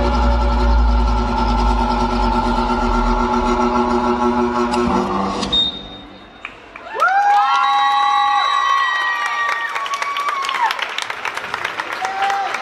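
Dance-routine backing track with a heavy steady bass, which cuts off about five seconds in. After a brief lull the audience cheers in held, high-pitched voices and breaks into applause.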